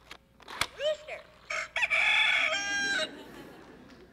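A See 'n Say-style pull-lever talking toy gives a sharp click and then plays its recorded rooster crow, cock-a-doodle-doo, through its small speaker; the crow stops sharply about three seconds in.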